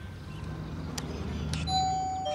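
A doorbell pressed: a click of the button, then the first chime tone ringing out near the end, over a low steady hum.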